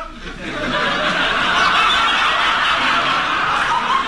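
Audience laughing in response to a punchline, building over the first second and then holding loud and steady.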